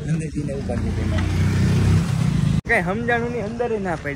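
Low, steady rumble of street traffic, like a road vehicle going by, lasting about two seconds. It ends at an abrupt cut, after which a man is talking.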